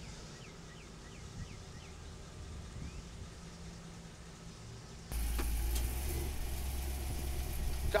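Faint outdoor ambience with a few quick falling bird chirps. About five seconds in, a box truck's engine comes in suddenly and runs steadily with a deep low hum.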